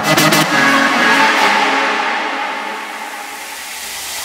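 Electronic bass-music track in a breakdown: the heavy bass and drums cut out about half a second in, leaving a sustained synth wash that fades down and then starts to swell again.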